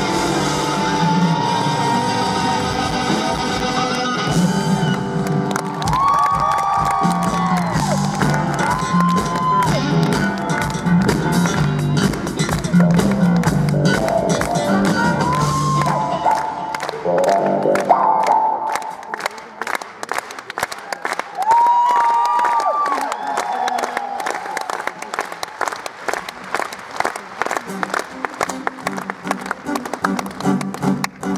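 Live band with saxophone and trumpet playing to the end of a song, which stops about eighteen seconds in. An audience then applauds and cheers, with a few whoops.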